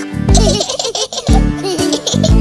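Children's song backing music with a repeating bass line, and a cartoon baby giggling in short bursts over it.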